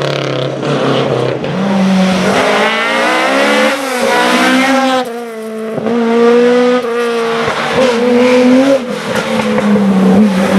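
Historic rally car engine at full throttle on a tarmac stage, its pitch climbing hard, breaking at a gear change about four seconds in, then holding at high revs.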